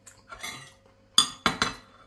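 Metal cutlery clinking against a dish while eating pie: two sharp clinks about a second and a half in, the first louder, after some soft scraping.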